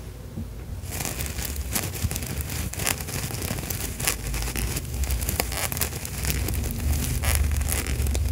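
Plush Beanie Baby bear rubbed and squeezed close against a foam microphone windscreen: scratchy fabric rustling and crackling, starting about a second in.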